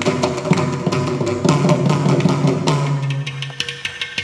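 Mridangam played in a fast run of strokes, its deep bass notes bending in pitch, over a steady tambura drone. The strokes thin out and grow sparser near the end.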